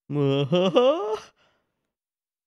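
A man laughing briefly, about a second long: one held voiced note, then a short break into a rising and falling chuckle.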